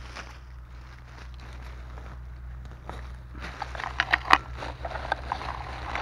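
Rustling and crackling of moss, dry leaves and twigs as a gloved hand works through the forest floor beside a porcini, turning into a run of sharp snaps and clicks in the second half, under a low steady rumble.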